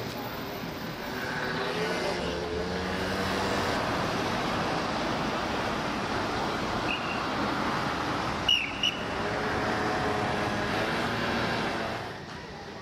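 Steady street traffic: cars passing at a roundabout. About eight and a half seconds in, two short high-pitched chirps stand out above it, the loudest sounds.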